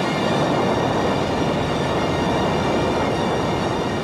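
Saturn V moon rocket's first-stage engines firing at liftoff: a dense, steady rumbling noise with no break.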